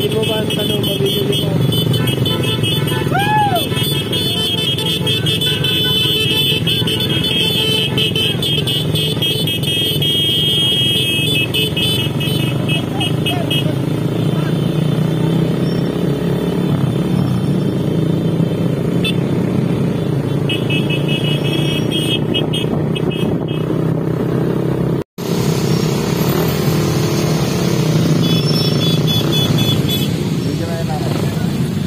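Motorcycles riding in a convoy: engines running under steady wind noise, with horn toots and voices mixed in. The sound drops out for an instant about 25 seconds in.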